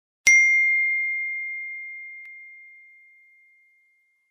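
A single bright notification ding: one clear chime tone struck once that rings on and slowly fades away over about three and a half seconds.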